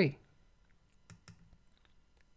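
Computer mouse button clicking: two faint, sharp clicks a little past a second in, with a few fainter ticks after.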